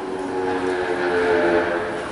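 A loud held chord of several steady tones, rising in just after the start and easing off near the end, with the sound of a horn blast.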